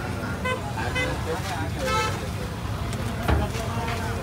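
Street traffic with vehicle horns: two short toots about half a second and a second in, then a longer, brighter honk about two seconds in, over traffic noise and background voices. A low thump comes a little past three seconds.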